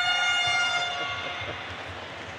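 A handheld air horn sounding one steady held note, which fades out about a second and a half in.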